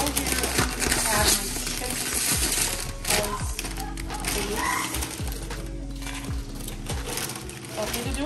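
Crinkling of a plastic tortilla-chip bag and blue corn tortilla chips clattering into a ceramic bowl, with many small crackles, over background music.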